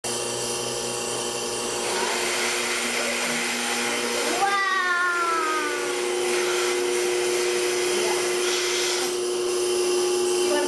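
Milking machine running as the milker unit is put on a cow: a steady vacuum hum and hiss from the pump and open teat cups, with a brief falling whistle about halfway through.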